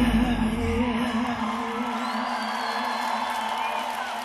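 A live rock band finishing a song: the drums and bass stop about a second in and a held note rings on, slowly fading, while the crowd cheers and whoops.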